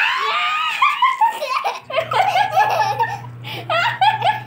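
A woman and a toddler laughing together, in high-pitched giggles that rise and fall.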